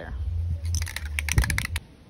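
Rust-Oleum Painter's Touch 2X aerosol spray paint can being shaken, its mixing ball rattling in a fast run of sharp clicks for about a second, over a steady low rumble.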